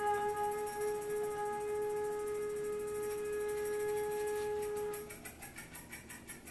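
A single long note held steady on a wind instrument, ending about five seconds in. Quieter scattered sounds from the group follow.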